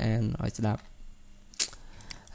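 A single sharp computer mouse click about one and a half seconds in, after a few words of speech.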